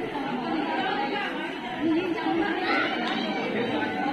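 Crowd chatter: many guests talking at once in a crowded hall, a steady babble of overlapping voices.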